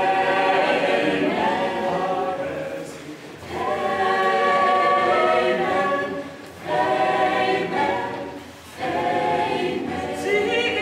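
Choir singing a cappella in long sung phrases, with short breaks between phrases about three, six and a half and nine seconds in.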